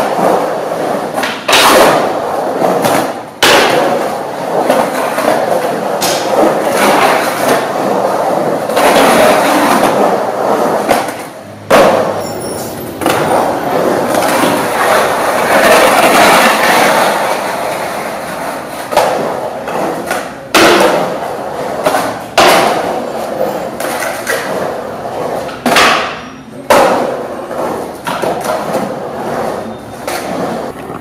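Skateboard wheels rolling over the concrete of a pool-style bowl, a continuous rushing noise that swells and fades as the skater carves the walls. Sharp clacks and thuds of the board striking the concrete and the coping come at irregular moments, a few seconds apart.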